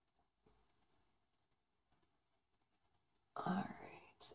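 Faint, scattered light clicks and crackles from a nitrile-gloved hand pressing and spreading resin over wax paper, with a soft breathy sound near the end.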